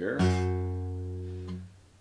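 A single low note plucked on the acoustic guitar's low E string, tuned down a half step and fretted at the third fret (the root of a G chord shape, sounding G flat). It rings and fades, then is cut off near the end.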